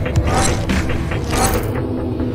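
Sound-design effects for an animated intro: mechanical clicking and gear-like whirring, with a swelling whoosh about once a second over a low sustained drone.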